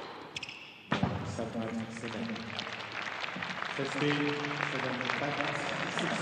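A tennis serve struck about a second in, an ace that wins the match, followed by the crowd applauding and cheering, with voices over the clapping.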